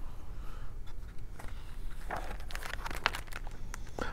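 A hand gently patting the paper pages of a picture book, a scatter of soft taps, and the page being turned.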